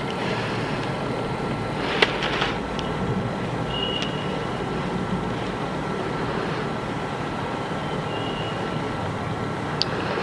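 Steady background hiss and hum with a faint steady high tone, a single sharp click about two seconds in, and two faint short high tones around four and eight seconds.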